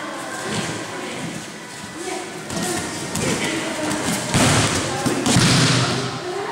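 Judoka grappling on tatami mats: bare feet shuffling and two loud, heavy thuds on the mats in the second half, with voices in the background.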